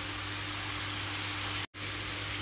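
Chicken and potato wedges sizzling in hot oil in a pan: a steady hiss, broken by a brief cut in the sound near the end.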